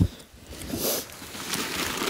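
A small cardboard shipping box set down into a larger cardboard box padded at the bottom: a single thump right at the start, then rustling and scraping of cardboard and packing paper as it is pressed into place.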